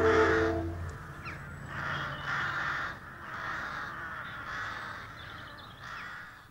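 Closing music dies away about a second in, followed by crows cawing over and over, roughly one caw a second.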